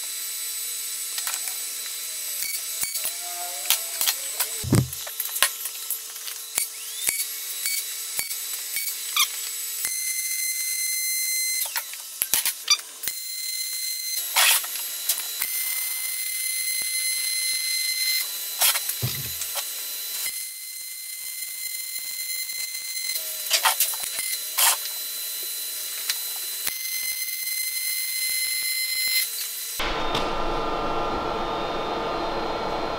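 Pulsed MIG welder arc on thick steel: a steady buzzing hum over a hiss, with crackling spatter, in several runs of a few seconds each with short breaks between beads. A dull knock sounds twice, about five seconds in and near the twentieth second.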